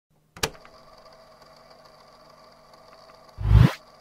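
Video intro sound effects: a single sharp click about half a second in, a faint steady hum, then a short whoosh sweeping upward from deep bass near the end.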